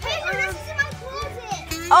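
Young girls talking over light background music.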